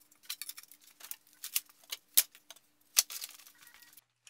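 Pieces of scrap lumber and wooden offcuts clacking and knocking together as they are sorted and picked up: quick irregular knocks, the loudest about two and three seconds in, over a faint steady hum.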